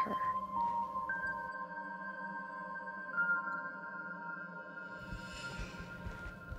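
Soft, sustained background score: long held synth tones enter one after another, about a second and then three seconds in, over a steady low drone.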